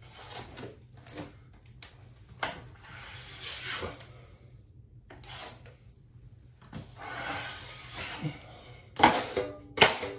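Drywall knife spreading a coat of joint compound on a ceiling in scraping swipes about a second long, with the knife scraped and knocked against a metal hawk near the end: two sharp clacks.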